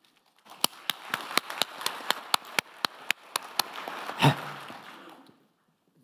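Audience applauding, with one close clapper's sharp claps standing out at about four a second. There is a brief louder thump about four seconds in, and the applause dies away shortly after five seconds.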